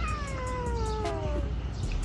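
A cat meowing once: one long meow, falling in pitch, lasting over a second.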